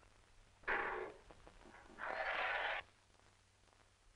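A woman crying out in anguish: a sudden short sobbing cry about a second in, then a longer, louder wail about a second later.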